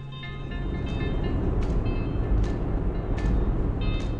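A low vehicle rumble swells up about half a second in, with a sharp click recurring roughly every 0.8 seconds. Soft background music with plucked notes plays over it.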